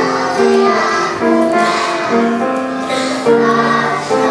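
A group of preschool children singing a song together, the melody moving in short held notes.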